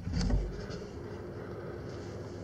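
A brief low thump near the start, then a steady low background hum.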